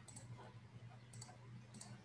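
A few faint computer-mouse clicks over near silence, the sound of quiz answers being selected on screen.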